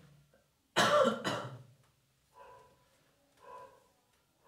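A man coughing twice in quick succession about a second in.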